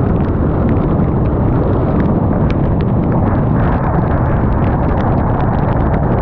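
Heavy wind rumble on the camera's microphone at highway speed on a motorcycle in heavy rain, with raindrops ticking irregularly against the camera.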